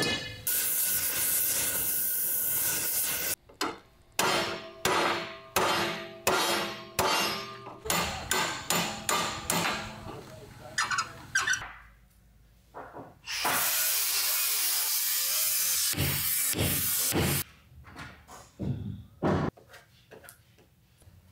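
Hammer blows on a metal rod and a metal piece set on a hardwood block, about two strikes a second with a metallic ring. They come between two stretches of a steady hissing noise, one at the start and one about two-thirds of the way through, with a few more blows near the end.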